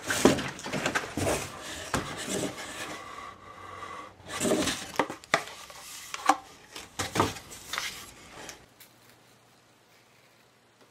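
Cardboard tubes being pulled from a bundle and handled: a string of irregular knocks and scrapes as they bump and rub against each other, stopping about nine seconds in.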